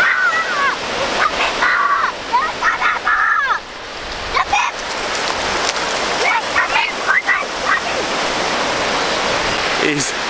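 Steady rush of small waves washing up at the shoreline, with a child's high, excited wordless squeals and shouts in the first few seconds and again around seven seconds in.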